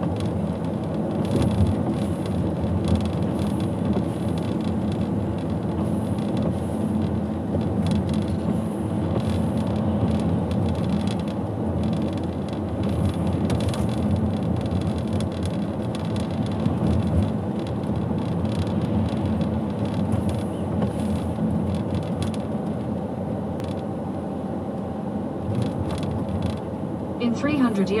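A car driving at low speed on a wet road: steady engine and tyre noise throughout.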